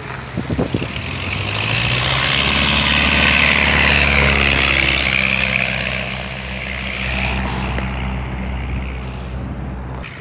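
De Havilland Tiger Moth biplane's four-cylinder engine and propeller passing low and close as it comes in to land, growing loudest about four seconds in and then fading, with the pitch dropping as it goes by. A few short bumps are heard near the start.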